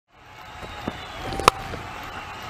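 Cricket bat striking the ball cleanly for a big hit: one sharp crack about one and a half seconds in, over steady stadium background noise.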